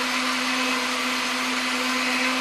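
Countertop electric blender running steadily, puréeing strawberries into a red mixture: an even motor hum with a whirring hiss.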